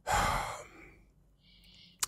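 A person sighing: one breathy exhale close to the microphone that fades away within about a second.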